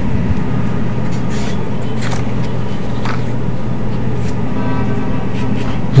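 A felt-tip marker writing on paper, a few faint short strokes, over a steady low electrical hum.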